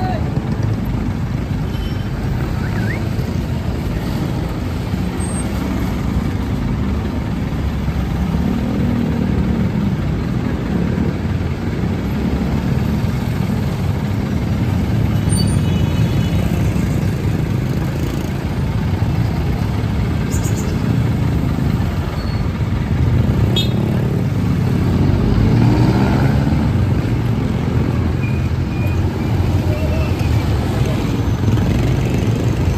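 Steady low rumble of a jeepney's engine running close by, mixed with street traffic, with voices in the background.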